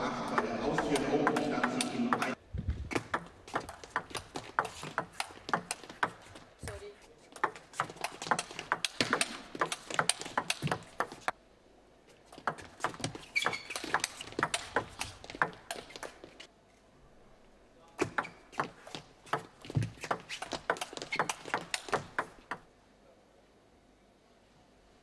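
Table tennis rallies: the celluloid ball clicking rapidly back and forth off the rubber bats and the table top. The clicks come in three runs of play, separated by short pauses between points.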